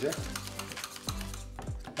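Background music with a steady beat over the scraping clicks of strained yogurt being beaten in a stainless steel container.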